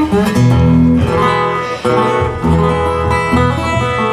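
Acoustic guitars playing blues chords and held notes, a metal-bodied resonator guitar alongside a wooden acoustic guitar, the chord changing every second or so.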